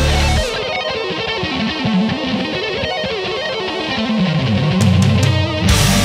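Melodic metal recording: about half a second in, the drums and bass drop out, leaving a lone lead guitar melody with bends and vibrato. The full band with crashing cymbals comes back in near the end.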